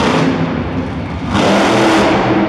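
Monster truck engine revving hard under throttle. About one and a half seconds in it surges louder and higher in pitch as the truck rears up onto its back wheels.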